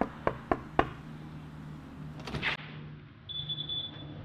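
Knuckles rapping on a wooden door, four quick knocks about a quarter-second apart, then a short clatter of a latch as the door is opened about two and a half seconds in. A brief high tone sounds near the end.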